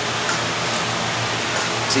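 Steady rushing noise of a running fan, with a constant low hum under it.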